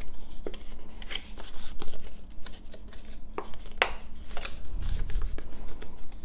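Designer series paper being folded along its score lines and creased by hand, with scattered light clicks and rubbing as the paper is bent and pressed.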